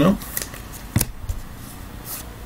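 Trading cards being handled on a tabletop, giving a few light clicks and flicks of card stock. The sharpest click comes about a second in.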